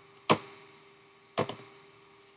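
Computer keyboard keystrokes: a single sharp click about a third of a second in, then a quick double click about a second later, as Enter is pressed to run the enable command at the switch's console.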